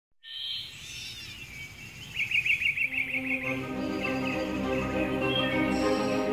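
Birds singing and calling, with a rapid trill of repeated notes about two seconds in. Soft, sustained music fades in under the birdsong from about halfway.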